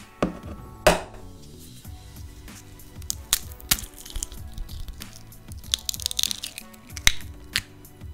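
A chicken egg being cracked: two sharp knocks in the first second, the loudest sounds, then clicks and shell crackling as fingers pull the shell apart, over background music.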